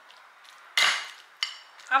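A metal spoon scraping and knocking against a bowl while stirring chunky guacamole: one loud scrape a little under a second in, then a short knock about half a second later.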